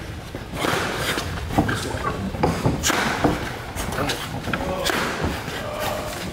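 A boxer's ring drill with a padded training stick: irregular thuds and knocks of feet and gloves, with short breathy hissing noises between them, in a large echoing gym.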